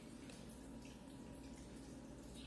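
Faint low steady hum with soft drips and trickling water from the aquarium.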